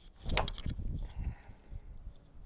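A golf club striking a ball off a turf hitting mat: a sharp crack about a third of a second in, followed by a softer low rumble for about a second.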